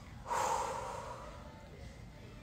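A woman's single audible exhale close to the microphone: a sudden breath about a third of a second in that fades away over about a second.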